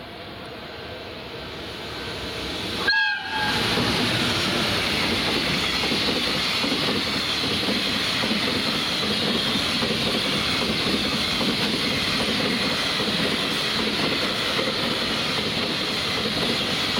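JR Freight EF210 "Momotaro" electric locomotive approaching and sounding one short horn blast about three seconds in. Then comes the steady rumble and wheel clatter of its long container freight train passing close by.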